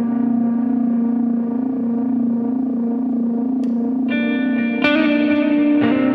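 Instrumental psychedelic stoner rock: an effects-laden electric guitar holds long, wavering notes, and new notes are struck about four and five seconds in.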